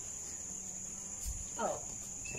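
Steady high-pitched drone of insects.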